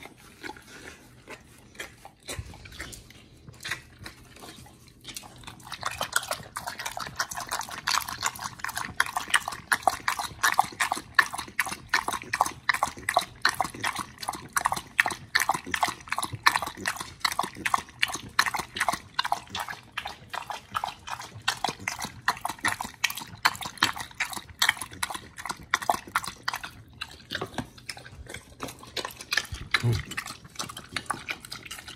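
Pit bull-type dog lapping water from a plastic tub, quick even laps at about four a second, starting about six seconds in and stopping a few seconds before the end.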